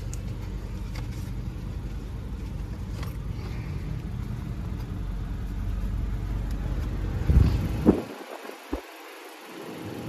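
Car engine idling, a steady low rumble heard from inside the cabin. Near the end come a couple of short knocks, and the rumble drops away.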